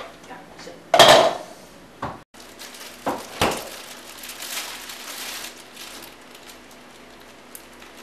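Crockery and kitchen utensils clattering: a loud clatter about a second in, two sharp knocks a little after three seconds, then a softer scraping.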